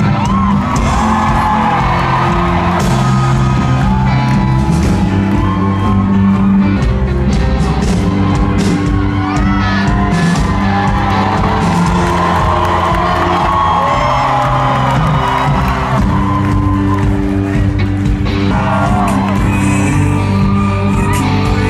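Live band music played loudly in a concert hall, heard from within the audience, with fans whooping and cheering over it.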